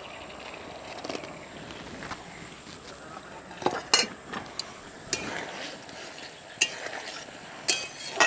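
A sauce simmering and sizzling in an aluminium kadai, a steady bubbling hiss, while fried roti balls go in and a spatula knocks and clinks against the pan about half a dozen times.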